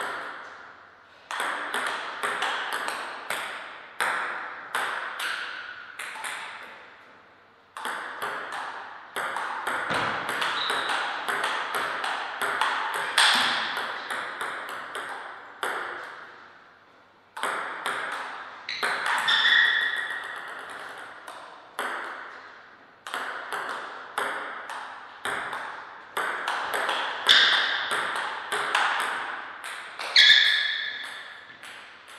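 Table tennis rallies: the ball clicking in quick runs off the paddles and the table, each hit ringing briefly in the room. Several short rallies are separated by brief pauses between points.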